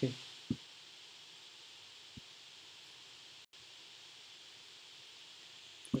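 Quiet, steady background hiss with a short low click about half a second in and a fainter click about two seconds in.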